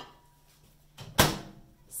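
A countertop microwave oven's door being swung shut, closing with one sharp bang a little over a second in.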